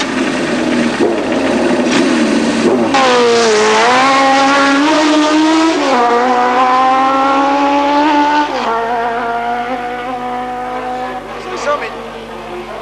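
Racing motorcycle engine under hard acceleration. Its note dips and then climbs, drops sharply as it changes gear about six seconds in and again near nine seconds, then grows fainter as the bike pulls away.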